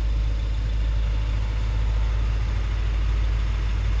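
Ford Capri 1600 engine idling steadily, heard through the open-doored cabin.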